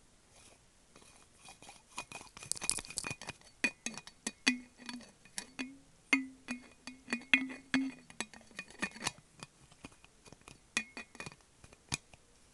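Long fingernails tapping and clicking on a metal water bottle, each tap ringing briefly. The taps are sparse at first, then come quickly for about seven seconds from around two seconds in, with a few more near the end.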